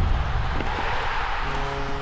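Logo-intro sound effect: a loud, noisy whoosh over a low rumble, joined about a second and a half in by a steady, held musical chord.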